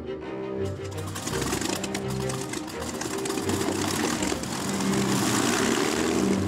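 Avro Lancaster's Rolls-Royce Merlin V-12 engines starting up and running, a rough, rhythmically pulsing mechanical noise that grows louder towards the end, mixed with background music.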